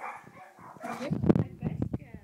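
Shetland sheepdog puppies whimpering and yipping, with a loud burst of close thumps and rustling from about halfway.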